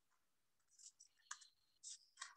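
Scissors cutting construction paper: a few faint snips in quick succession.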